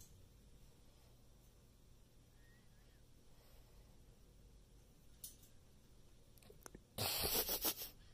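A cat's claws scraping and gripping on a thin metal pole as it climbs, in one short burst of scratching near the end, with a single faint click a little earlier.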